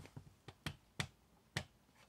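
A few faint, sharp clicks or taps, irregularly spaced about half a second apart.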